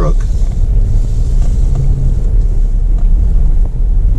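Jeep's engine and tyres on wet pavement, heard from inside the cab as it rolls slowly: a steady low rumble with a faint hiss above it.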